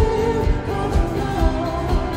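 Live pop band music: a man's voice carrying a melody over drums and bass, with a steady beat of about two drum hits a second.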